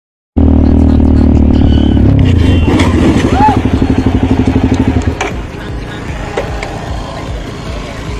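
Motorcycle engine running as the bike slows, then idling with a fast, even thumping that cuts off suddenly about five seconds in.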